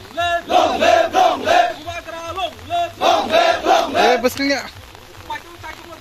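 A crowd of men shouting slogans together in short chanted phrases, which stop about four and a half seconds in.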